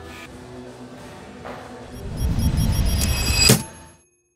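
Soft background music, then a low rumbling swell about halfway through that ends in a sharp hit, a cinematic transition effect, after which the sound cuts off.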